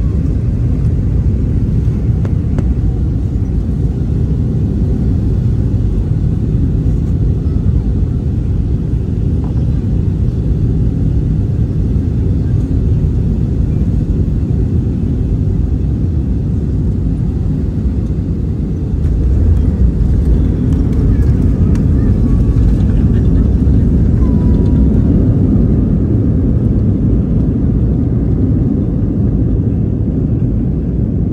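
Steady low rumble of a jet airliner heard from inside the passenger cabin, growing a little louder about two-thirds of the way through.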